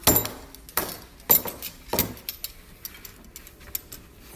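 Silverware and tableware knocking and clinking on a wooden dining table as places are set: four sharp strikes in the first two seconds, then lighter taps.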